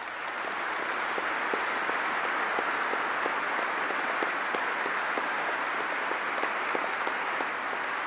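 Large seated audience applauding in a big echoing hall, a steady wash of many hands clapping that builds at the start and holds level.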